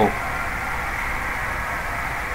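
Steady hum and hiss with no distinct events.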